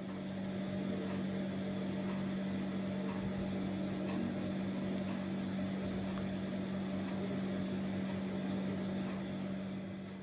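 Pot of vegetable and prawn curry simmering, a steady bubbling hiss over a constant low hum.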